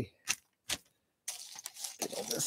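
Small plastic LEGO pieces clicking and sliding on a metal diamond-plate tabletop: two light clicks, then, from a little past halfway, a denser rattle and rustle as hands stop the pieces from sliding away.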